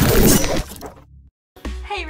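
Logo-intro sound effect: a loud shattering crash at the start that rings away within about a second and cuts off into a brief silence. Music with a steady beat starts near the end.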